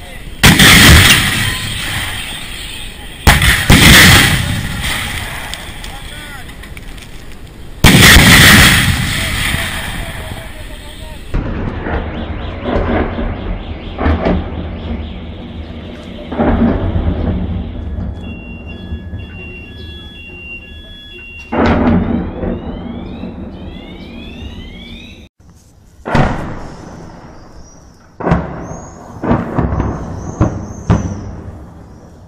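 Three heavy artillery blasts in the first ten seconds, each with a long rumbling tail. Then smaller distant thuds, an alarm beeping and then whooping in repeated rising sweeps, and more explosions near the end.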